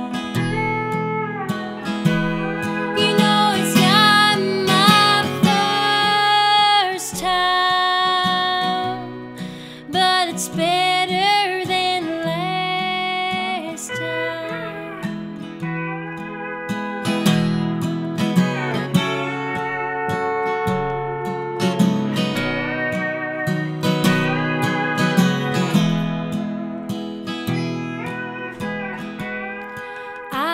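Pedal steel guitar playing an instrumental break, its notes sliding and bending in pitch, over a strummed acoustic guitar.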